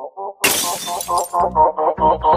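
A sudden shattering crash sound effect about half a second in, fading within half a second. Then a meme music track starts, with quick repeated short chopped notes and a bass beat coming in.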